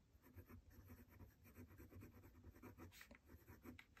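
Faint scratching of a fountain pen nib writing on notebook paper: a quick run of short handwriting strokes.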